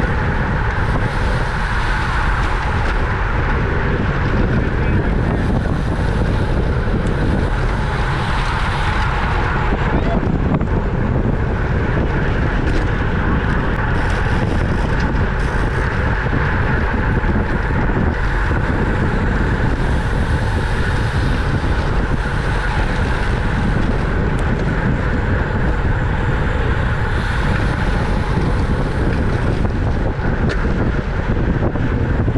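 Steady rush of wind over a bike-mounted camera's microphone, mixed with tyre and road noise, from a road bike racing in a pack at about 25 mph.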